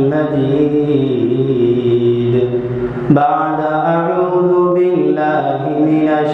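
A man's voice in a melodic religious recitation, holding long notes that glide slowly up and down, with a short break for breath about three seconds in.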